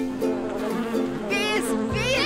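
A bumblebee buzzing over light ukulele music, with a high, wavering shriek about a second and a half in.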